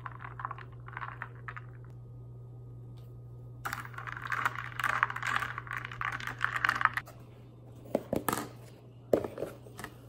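Almond milk poured from a carton into a stainless steel cup, glugging in short bursts. Then a spoon stirs briskly in the steel cup, a fast run of clinks and scrapes for about three seconds. Near the end come a few separate knocks of plastic food containers being handled on the counter.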